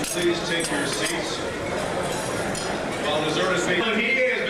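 Dinner crowd chatter, many voices talking at once, with ceramic plates and silverware clinking repeatedly as dishes are handled.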